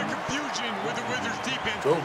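A man speaking, from a basketball game's TV broadcast, over a steady background of arena noise.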